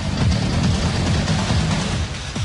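Electronic music sting for a news segment's title graphic: a dense, hissing whoosh over low synth tones, held at a steady level.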